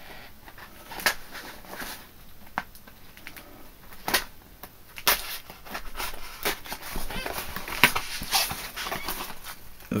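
A blade cutting through the tape and flaps of a sturdy cardboard shipping box, with irregular scrapes, clicks and rustles of the cardboard.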